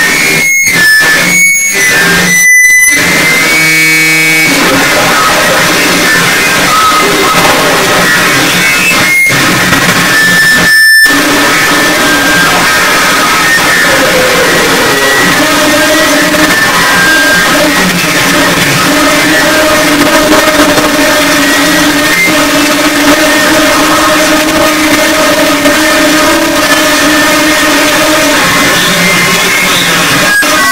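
Harsh noise electronics played live: a loud, dense wall of distorted noise. It cuts out abruptly several times in the first few seconds and again at about 9 and 11 seconds, then runs on more steadily with low droning tones held underneath.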